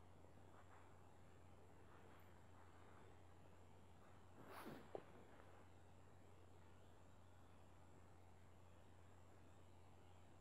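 Near silence: room tone with a faint steady hum, broken once about five seconds in by a brief soft rush ending in a small click.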